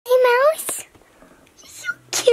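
A young girl's voice: a short, high-pitched vocal sound in the first half second, then a breathy, whisper-like sound and a quiet stretch.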